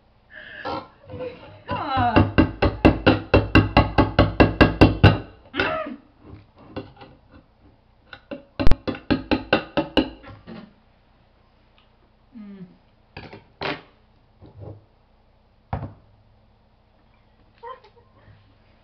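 A woman laughing in two long bursts of rapid, evenly spaced pulses, the first a little after the start and the second near the middle, followed by a few short, sparse knocks.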